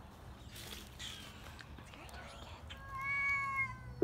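Domestic cat giving one long, steady meow near the end, dipping slightly in pitch as it ends.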